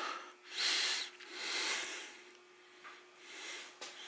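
A person breathing audibly through the nose, three breaths spaced about a second apart, over a faint steady hum.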